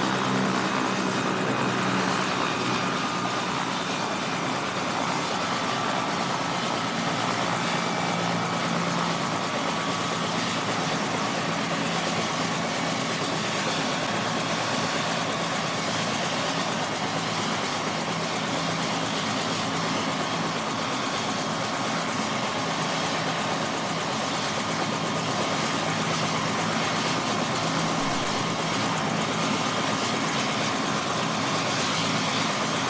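A helicopter running on the ground close by: a steady, loud rotor and engine noise with a high whine over it, its downwash blowing hard.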